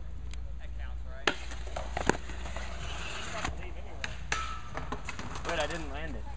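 Skateboards clacking and knocking on concrete, with two sharp loud clacks about a second and two seconds in and smaller knocks after, over voices talking.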